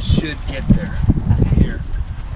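Hooves knocking and shuffling on the ground as livestock move about in a pen, with bits of indistinct speech over them.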